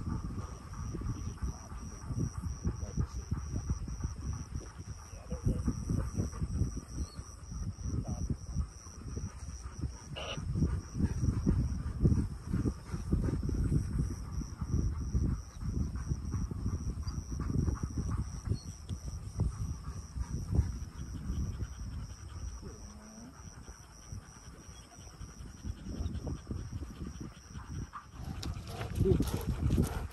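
Wind buffeting the microphone in gusts, with a steady high-pitched whine above it that stops near the end.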